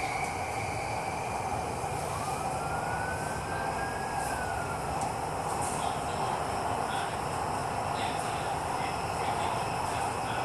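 Electric metro train heard from inside the carriage while running on an elevated line: a steady rumble and rush of the ride, with a thin motor whine that rises in pitch about two seconds in and then levels off as the train gathers speed.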